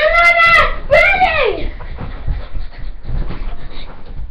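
A dog giving two short howl-like whines, each rising and then falling in pitch, one right after the other, followed by quieter panting close to the microphone.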